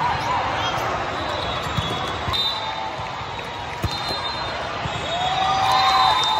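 Volleyballs being hit and bouncing in a large, echoing hall: a few dull thumps over a steady din of crowd chatter from many courts, with voices shouting near the end.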